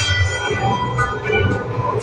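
A loud, pulsing low rumble with scattered held tones over the concert PA, in a short lull between stretches of music.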